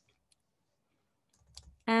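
Near silence broken by a few faint clicks from a computer mouse and keyboard in use: one about a third of a second in and a short cluster around one and a half seconds in.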